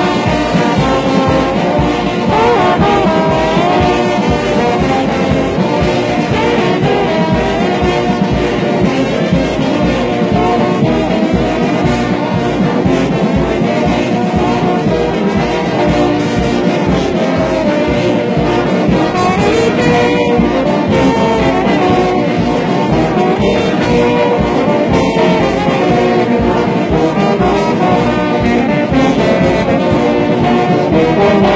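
Large brass band playing together: massed trombones, sousaphones and baritone horns sounding full chords over a regular low beat.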